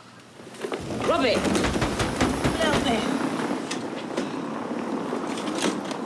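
A woman's short breathy exclamations over outdoor street noise. A low rumble runs through the first half and stops about three seconds in, and faint knocks follow.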